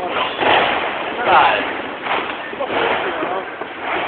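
New Year's Eve fireworks and firecrackers going off: several sharp bangs, the loudest about a second and a half in, over a steady noisy background of more distant explosions.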